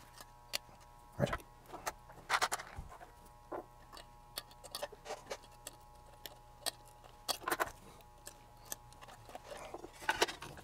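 Irregular small clicks, clinks and rattles of metal parts and hand tools being handled while an aluminium instrument chassis is reassembled, a few louder knocks among them, over a faint steady hum.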